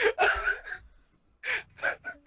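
A man's sharp, breathy gasp lasting under a second, followed by two short breaths about a second and a half in.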